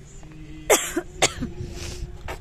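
A person coughing twice, about half a second apart, the first cough the loudest, followed by a short breathy hiss.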